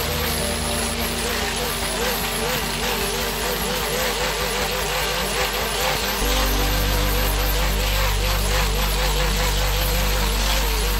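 An electric angle grinder grinding a steel file's blade, its whine wavering up and down a few times a second as the disc is pressed and rocked over the steel. A low hum grows louder about six seconds in.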